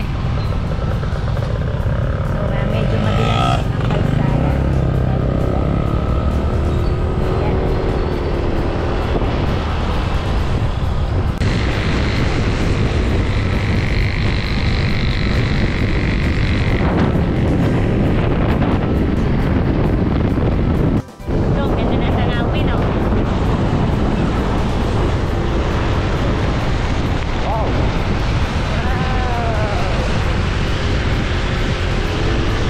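Wind rushing over the microphone with the steady running of a motorcycle and tyre noise on a wet road, loud throughout and cutting out briefly about two-thirds of the way through.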